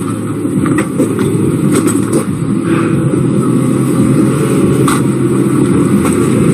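A motor vehicle's engine running close by, a steady low rumble with no break.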